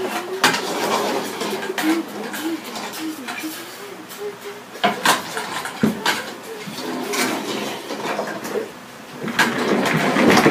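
Wordless humming or vocal play in a wavering pitch for the first few seconds, with plastic toys knocking and clattering on a wooden tabletop several times as they are moved.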